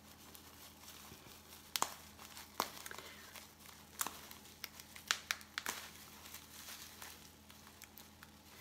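Bubble wrap and thin plastic wrapping crinkling as they are peeled off by hand, with irregular sharp crackles.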